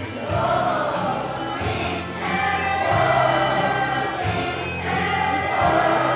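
Children's choir singing together over instrumental accompaniment with a moving bass line, the sung phrases swelling in loudness about every three seconds.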